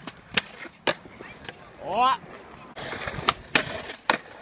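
Skateboard on concrete: sharp clacks of the board and trucks striking a concrete ledge and the ground in the first second as the skater gets onto the ledge, then a stretch of wheels rolling on concrete with two more clacks near the end.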